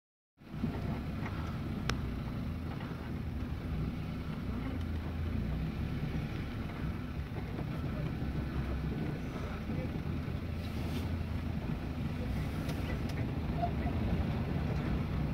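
Safari jeep's engine running steadily at low revs, a low, even hum.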